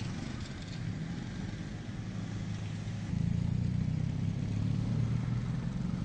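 Street traffic: cars and motorcycles passing at low speed, with a steady low engine hum that grows louder about halfway through.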